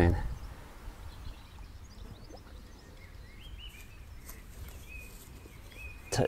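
Quiet outdoor ambience: a low, steady background rumble with small birds chirping faintly from about halfway through.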